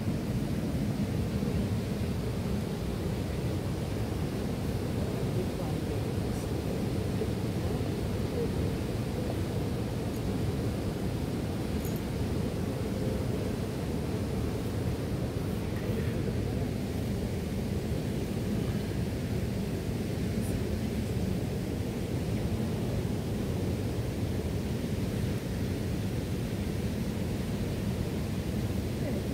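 Steady, low rushing outdoor noise at an even level, with no distinct events.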